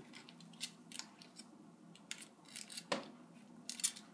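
An African grey parrot's beak making irregular sharp clicks and small crunches as it nibbles at a wooden chew toy, with one louder snap about three seconds in.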